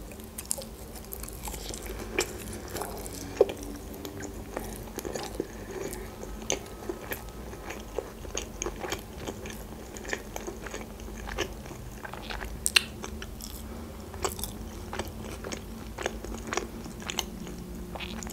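A person chewing a large mouthful of sushi roll close to the microphone, with many small mouth and food clicks scattered throughout.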